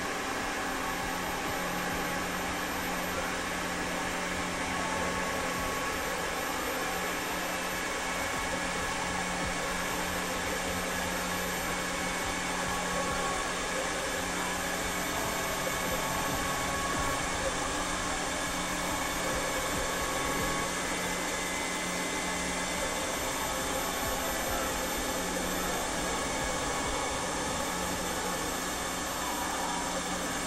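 Experimental electronic noise drone: a steady dense hiss-like wash with a constant low humming tone underneath and faint held higher tones drifting in and out.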